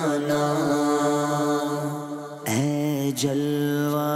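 A male voice chanting a devotional Islamic vocal in long held notes with ornamented turns in pitch. There is a short breath break a little past the middle before the next phrase.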